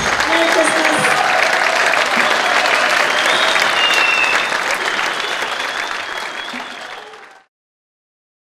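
Concert audience applauding, with voices calling out, as the band's music stops. The applause fades down and cuts off abruptly a little past seven seconds in.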